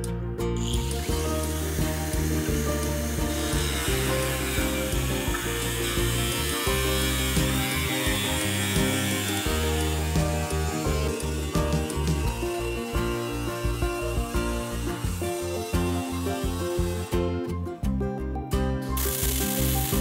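A power tool cutting through the corrugated steel roof of a shipping container, a harsh high-pitched grinding that runs for most of the stretch, stops a few seconds before the end and comes back briefly at the very end. Background music plays throughout.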